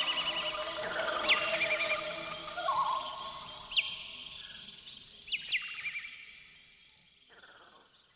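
Bird chirps repeating about once a second over soft background music, the whole fading out over the last few seconds.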